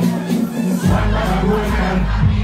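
Live dancehall concert: a large crowd shouting and cheering over loud music, with a heavy bass line coming in about a second in.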